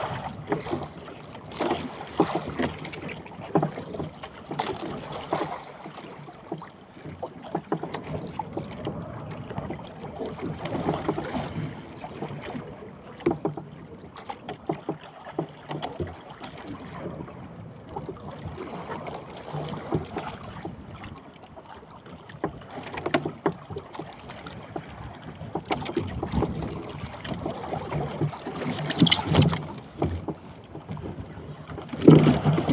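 Sea water slapping and sloshing against the hull of a small outrigger boat, swelling in surges every few seconds, with scattered knocks and wind on the microphone.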